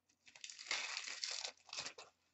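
Crinkling of a plastic trading-card pack wrapper being handled by hand, a dense crackle lasting about a second and a half.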